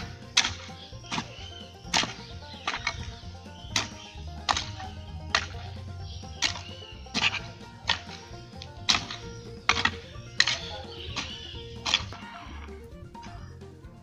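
A grub hoe (enxadão) striking into hard, stony soil in a steady rhythm, about once every three-quarters of a second, stopping shortly before the end. Soft background music plays underneath.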